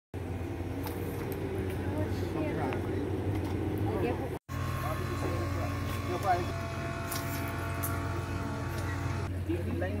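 A boat's outboard motor running with a steady low hum, under indistinct voices; the sound drops out briefly twice.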